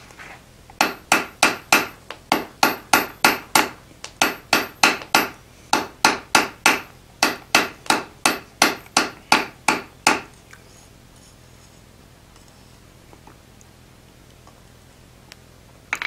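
Hand hammer striking a small bar of hot wrought iron on the anvil, drawing it down to about quarter-inch stock for a rivet. The blows are quick, about four or five a second, in runs of five or six with short pauses, and stop about ten seconds in.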